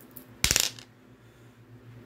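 An astrology die thrown onto a table, landing with a quick clatter of several small hits about half a second in.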